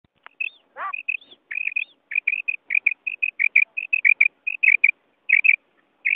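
Female quail (batair) calling: a rapid run of short, high chirps, several a second, with one longer rising note about a second in and a short pause near the end. This is the female's call that is played to lure male quail in hunting.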